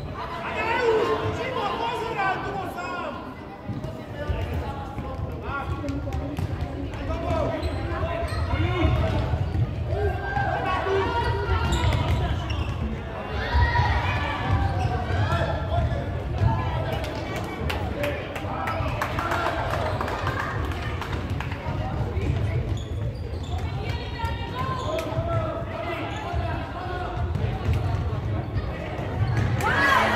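Indistinct voices calling out across a sports hall during a futsal game, with the thuds of the ball being kicked and bouncing on the wooden court.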